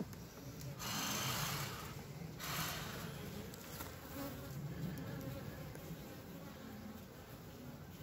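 Honey bees buzzing around an open hive as a steady low hum, with two brief scraping noises about one and two and a half seconds in.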